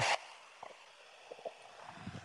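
Low hiss on a video-call audio line with a few faint, muffled voice fragments from a remote caller speaking away from his microphone.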